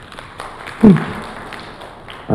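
A pause in a man's speech over a handheld microphone, broken about a second in by one short vocal sound falling in pitch, over low hall background noise.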